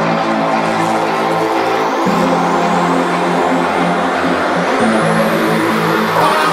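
Drum and bass electronic music: sustained synth chords that change twice, with rising sweeps climbing in pitch from about two seconds in, building up to a drop.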